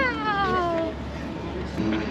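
A drawn-out vocal cry whose pitch slides down steadily over about the first second, the tail of a call that rose just before.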